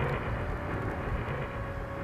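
Steady background noise from the open microphones of a public-address system, with a faint held tone.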